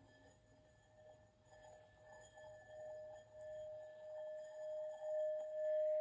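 Tibetan singing bowl sung by rubbing a wooden mallet around its rim: one steady ringing tone that swells about once a second and builds steadily louder as the rim is circled.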